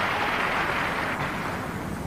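Arena audience applauding, an even rush of clapping that slowly dies away.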